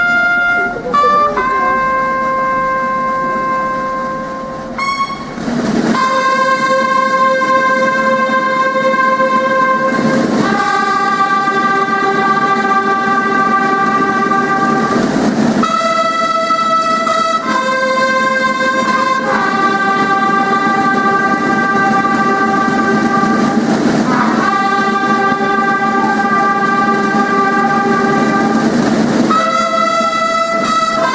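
Military brass band playing slow, long-held chords that change every four or five seconds, with a brief swell of drums or cymbals at each change.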